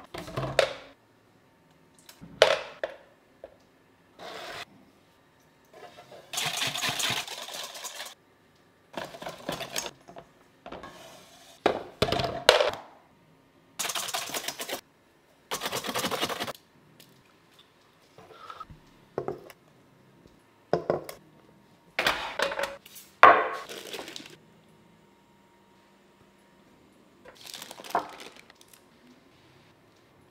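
A run of kitchen prep sounds on stainless steel bowls: eggshells cracked with sharp taps, then egg whites whisked in several short spells of scratchy whisking, with clinks of the whisk against the metal bowl in between.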